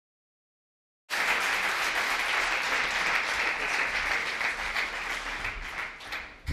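Audience applauding in a hall: the clapping cuts in abruptly about a second in and thins out near the end.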